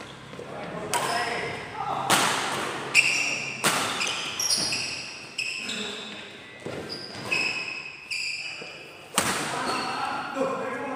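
Badminton rally: a string of sharp racket hits on the shuttlecock, about one to two seconds apart, echoing in a large hall, with short high-pitched sneaker squeaks on the wooden court between the hits.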